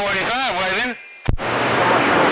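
A man's voice calling on a CB radio ends about a second in. A sharp click follows as the transmitter unkeys, then the receiver's steady hiss of band static.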